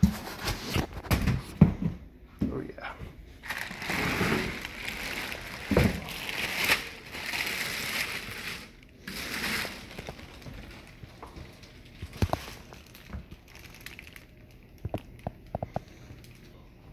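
Foam packing, cardboard and plastic wrap being handled as a boxed plasma cutter is pulled out: rustling, scraping and crinkling with several knocks for about ten seconds, then a few light clicks near the end.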